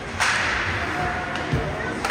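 Ice hockey play along the boards: a sharp crack about a quarter-second in, followed by a short scraping hiss, and a low thud about a second and a half in, over a steady rink noise with crowd chatter.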